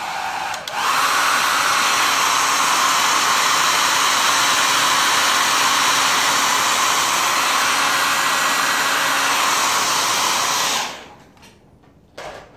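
Handheld hair dryer blowing steadily with a faint motor hum, turned up louder about a second in and switched off near the end, winding down briefly.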